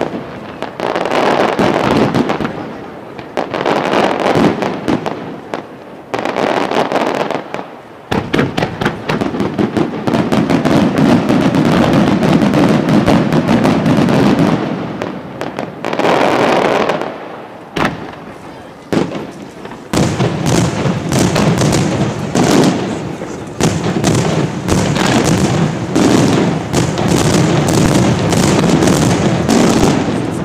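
An aerial fireworks display firing a rapid, near-continuous barrage of bangs and crackling bursts, easing off in a few brief lulls between the volleys.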